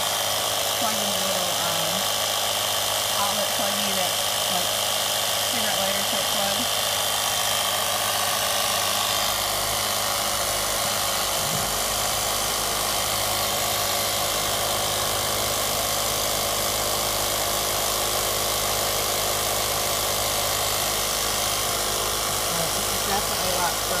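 Handheld 12-volt car vacuum running as an air compressor, its small electric motor buzzing steadily as it pumps air through a hose into an exercise ball.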